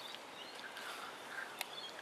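Quiet outdoor background with a few faint, short bird chirps and one sharp click about one and a half seconds in.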